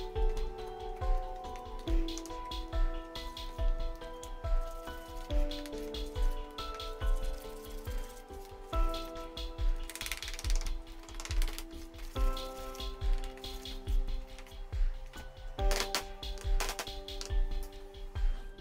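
Background music with a steady beat and sustained melodic notes.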